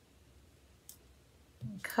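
A pair of scissors snipping through a strand of yarn: one short, crisp click about halfway through.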